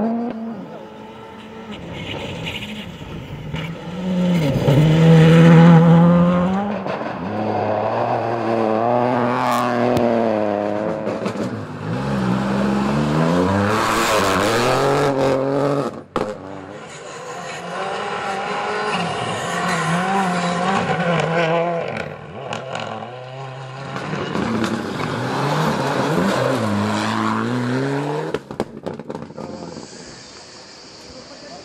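Rally cars at full throttle on a gravel stage, engines revving hard and climbing in pitch, dropping back at each gear change as they pass, with gravel and stones scraping and spraying under the tyres. Several passes follow one another, with an abrupt break about halfway through.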